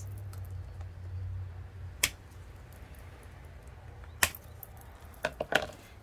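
Two sharp snaps about two seconds apart as the tails of plastic zip ties are clipped off with cutters, with a few lighter clicks near the end.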